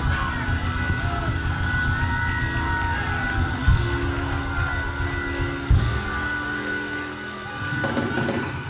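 Church band music in a praise break: sustained chords with drum and cymbal hits, the chord changing twice, about four and six seconds in.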